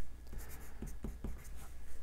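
Pencil writing words on a sheet of paper, a run of short separate strokes.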